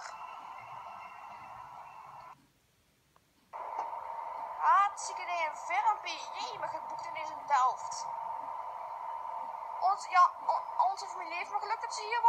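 Steady hum of an electric train at an underground platform for about two seconds, then a sudden cut to a second or so of silence. After that come indistinct voices over a steady hum.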